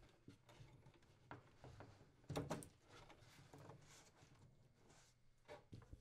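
Near silence, with a few faint, brief handling noises, the loudest about two and a half seconds in.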